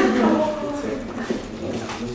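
A person's voice making a short pitched sound without clear words, fading out within the first second, over background room chatter.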